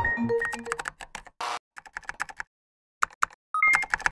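A music sting ends in the first second, giving way to computer-keyboard typing sound effects: irregular keystroke clicks, with a short hiss about a second and a half in and a brief rising two-note beep near the end.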